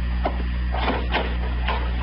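Radio-drama sound effects: several irregular clicks and knocks, about one every half second, over the steady low hum of an old transcription recording.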